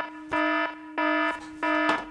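Alarm sound effect: a buzzing warning tone of one steady pitch, beeping in an even rhythm of about one and a half beeps a second.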